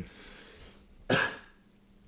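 A man gives a single short, throaty cough about a second in, with faint room hiss around it.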